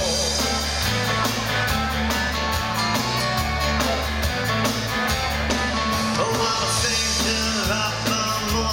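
Live dansband playing amplified: drum kit, electric bass, electric guitar and keyboards with a steady beat and a bass line that changes note about once a second.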